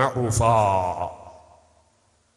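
A man's voice speaking a drawn-out phrase, trailing off about a second in, then near silence.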